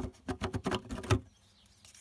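Plastic trickle vent cover being prised off a window frame: a quick run of clicks and scrapes over about a second, ending in a louder snap as it comes free.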